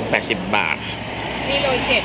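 Speech: a voice quoting a price in Thai, 'eighty baht', over a steady low rumble in the background.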